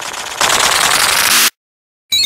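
A loud, harsh, rapid rattling hiss that gets louder about half a second in, then cuts off abruptly into dead silence.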